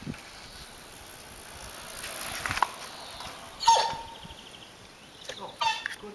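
A bicycle rolling past faintly, then two short high-pitched calls from a voice: one a little past halfway that holds a note and drops, the louder of the two, and a shorter one near the end.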